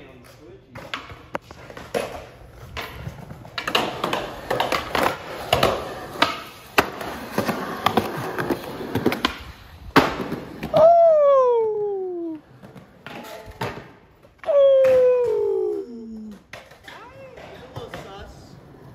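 Skateboard wheels rolling on concrete with scattered clicks, then a sharp board impact about ten seconds in. Two long shouts falling in pitch follow.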